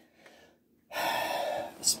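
A man's audible in-breath: after a near-silent pause, a noisy intake of breath lasting about a second, taken just before he speaks again.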